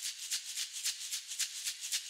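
A shaker or maraca playing a quick, even rhythm of about seven strokes a second, alone as the opening of a piece of music.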